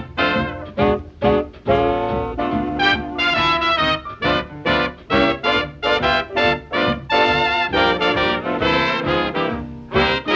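1930s swing dance band with a brass section of trumpets and trombones, playing an instrumental passage. Short, clipped chords fall on a steady beat, with a few longer held chords between them.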